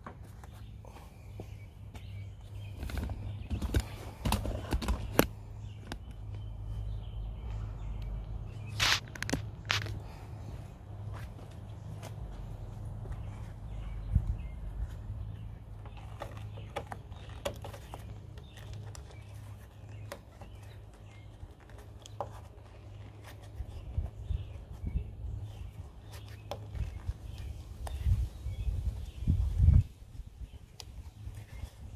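Hands pushing and working a rubber wiring-harness boot and grommet into a car's door jamb: scattered rubbing, rustling and small clicks, heaviest a few seconds in, around nine seconds, and near the end, over a steady low rumble.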